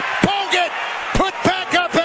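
Basketball game sound from the arena floor: crowd noise with a few sharp knocks and several short, quick squeaks in a row, as play goes on around a made basket.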